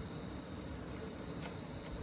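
Quiet, steady workshop background hiss with a few faint light ticks.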